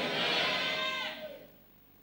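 Congregation answering with a long, drawn-out "amen" that falls slightly in pitch and fades out about a second and a half in.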